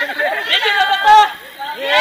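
A group of people talking and calling out over one another, with a short lull near the end.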